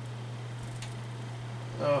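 Honeywell HF-810 turbo fan running on its low speed with a steady low hum, its blades and motor clogged with hair and dust so that it moves little air.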